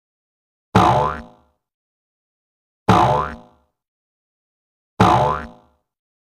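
An intro animation's cartoon sound effect played three times, about two seconds apart: each a short springy hit with a sliding pitch.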